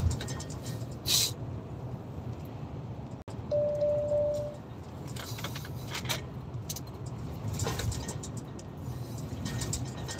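Lorry cab noise at motorway speed: a steady low rumble of engine and tyres. A third of the way in, a single steady beep sounds for about a second.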